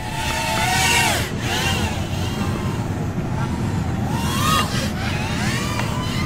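BETAFPV Air75 tiny whoop drone in flight, its motors and props whining in a pitch that rises and falls with the throttle, over a steady hiss.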